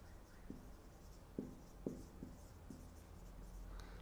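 Marker pen writing on a whiteboard: faint strokes with about five light ticks of the tip against the board.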